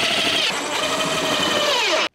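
Cordless drill-driver running steadily as it drives a screw through a carpeted cat-tree platform, its motor whine dropping in pitch near the end as it slows and stops.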